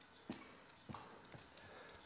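A vegetable peeler drawn along a cucumber, cutting off ribbons: a few faint short scrapes in near silence.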